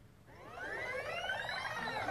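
Several audience members letting out a drawn-out "ooh" together, their voices rising and then falling in pitch over about two seconds. It is a group's reaction to the gorilla coming into view.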